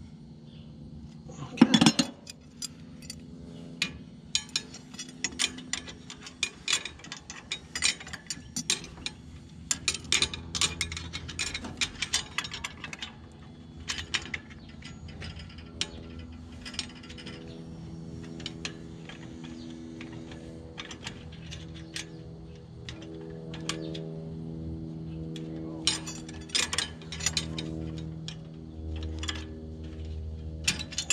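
Rapid metallic clicking and clinking of a hand tool worked against the steel blow-off pipes over a Krone Big Pack baler's knotters, in irregular runs with short pauses, over a steady low hum.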